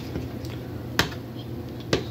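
Two sharp clicks, about a second in and again near the end: a metal fork striking the foil-lined metal pan as it digs into steak.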